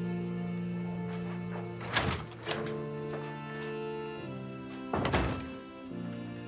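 Soft background score of held chords that shift twice, with a few dull thuds over it, the loudest about five seconds in.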